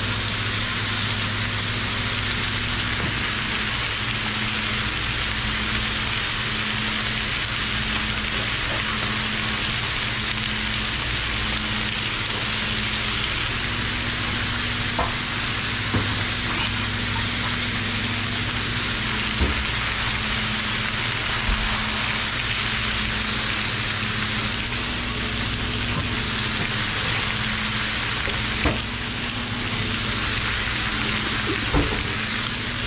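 Chunks of beef sizzling steadily as they sear on a hot flat-top griddle, over a steady low hum, with a few light knocks along the way.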